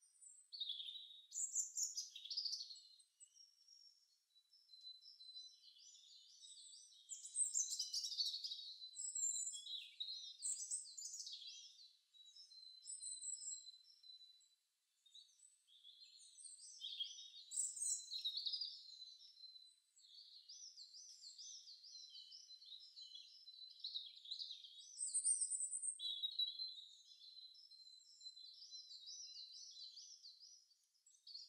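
Several birds singing at once: a busy mix of high chirps, rapid trills and warbling phrases, with a thin steady high tone running underneath. All of it is high-pitched, with no low sound at all.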